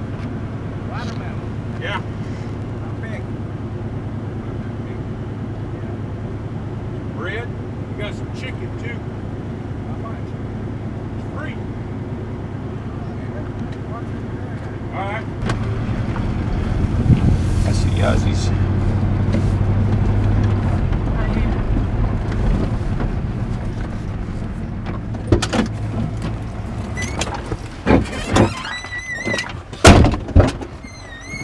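Older pickup truck's engine running, heard from inside the cab while driving; about halfway through the engine note rises and grows louder as the truck pulls away, then eases off, with a few knocks near the end.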